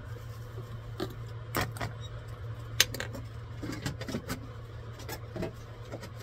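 Screw cap being unscrewed and taken off a plastic bottle of photopolymer resin: a scatter of small clicks and knocks, the sharpest nearly three seconds in, over a steady low hum.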